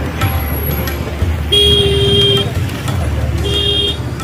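A vehicle horn honks twice over road traffic noise: a longer honk of about a second starting a second and a half in, then a shorter one near the end.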